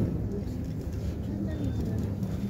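Steady low rumble inside an OTIS-LG elevator car, with people talking faintly in the background.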